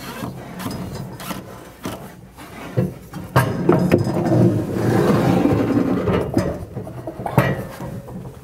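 Plywood and a wooden sled knocking and rubbing against the cabinet's wooden sides as they are shifted and propped into place, with background music underneath. The knocks are loudest and most frequent in the middle of the stretch.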